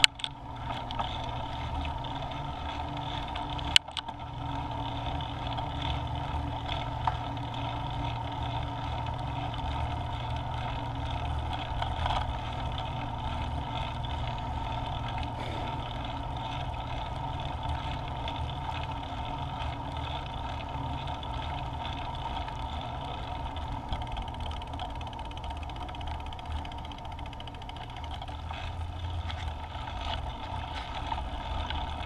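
Space Scooter rolling along a road: steady wheel and road noise with wind on the microphone, and a sharp click about four seconds in.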